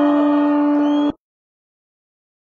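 A loud, steady, single-pitched tone like a horn blast sounds over crowd noise. Just over a second in, the whole soundtrack cuts off abruptly to dead silence.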